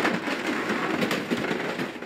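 Hydraulic excavator claw tearing and crushing an aircraft's sheet-metal skin for scrap: a sharp crack at the start, then continuous crunching and crackling of metal.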